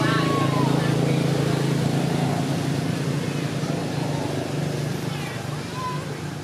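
A steady low engine-like hum runs throughout, with a few short high chirping calls near the start and again near the end.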